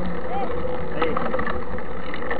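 Steady, loud rushing of wind on the microphone of a bike-mounted camera, with faint short spoken words over it.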